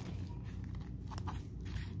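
A few short plastic crinkles and clicks as a hanging blister pack of erasers is handled on a pegboard hook, over a steady low hum.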